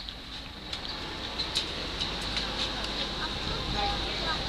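Boat motor running with a steady low rumble that grows louder, over a wash of water noise.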